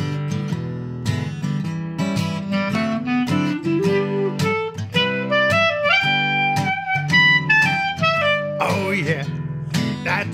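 Instrumental intro on acoustic guitar and clarinet: the guitar strums steady chords while the clarinet plays a melody that climbs in steps and then comes back down.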